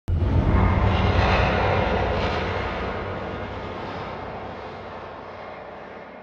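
Logo-intro sound effect: a sudden loud, deep rumble with hiss, fading slowly away over several seconds.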